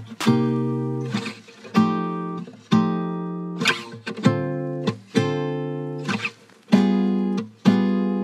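Instrumental drill-style beat stripped down to a guitar part: plucked chords about once a second, each ringing and fading, with no drums or bass hits.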